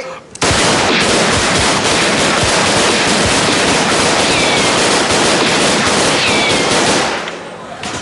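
Rapid, continuous handgun fire: a dense barrage of shots that starts suddenly and holds steady for about six seconds before dying away. Two short whistling glides sound partway through.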